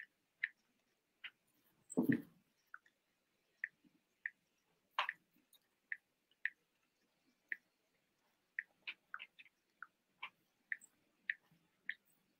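Scattered faint clicks and taps, about twenty at an uneven pace, with a louder knock about two seconds in, picked up on an open video-call microphone.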